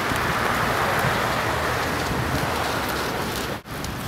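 Rollator walker wheels rolling over icy, crusty sidewalk snow, a steady gritty hiss that cuts off suddenly just before the end.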